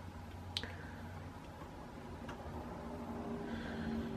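Quiet room tone with a faint steady hum, broken by a few small soft clicks of handling as fine wire is wound around a fly hook held in a tying vise.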